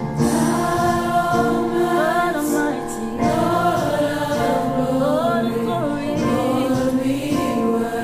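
Gospel choir singing in close harmony, with sustained chords and a few melismatic runs sliding up and down in the upper voices.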